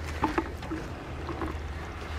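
Goats chewing banana right at the microphone: a few short, soft wet smacks and clicks of munching over a steady low rumble.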